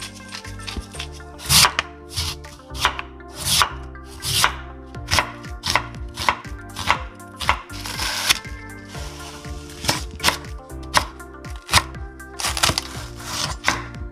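Chef's knife chopping a green onion on a wooden cutting board: a string of sharp knocks, about two a second, with a longer, noisier stroke about eight seconds in.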